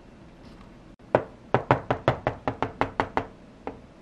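A quick run of about a dozen light, sharp knocks, roughly six a second, then one more near the end: a small hard-plastic toy figure tapped or hopped on the toy playset's floor.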